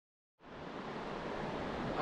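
Steady rush of creek water and a small waterfall, fading in about half a second in and holding evenly.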